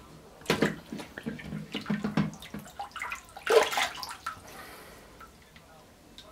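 Water from a bathroom sink tap splashing irregularly onto a phone in a LifeProof waterproof case held over the basin. The splashing is busiest for about four seconds, then settles to a quieter, even run.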